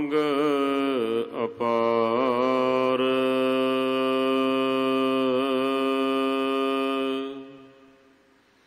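A man's voice chanting Gurbani in the slow, melodic style of a Hukamnama recitation, without instruments. A few shifting notes lead into one long held note with a slight waver, which dies away near the end.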